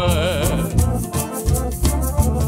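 Live Romanian lăutărească folk music. A man's voice holds the last sung note, "mă!", with a wavering pitch, then the band carries on with accordion and a plucked cobza over a fast shaker beat.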